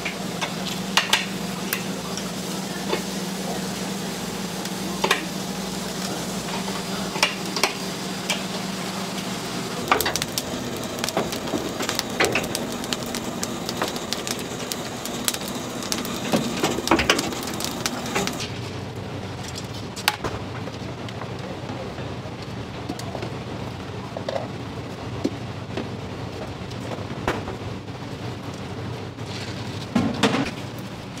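Cooking sounds: a steady crackling, sizzling hiss with scattered sharp clicks and knocks of utensils, the background changing abruptly about ten and eighteen seconds in.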